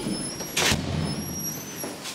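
A footstep into an elevator car: a brief scuffing whoosh about half a second in, with a low thud and rumble from the car floor under it.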